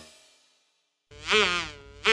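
After the last music fades into a brief near silence, a short buzzy tone wavers and rises then falls in pitch about a second in.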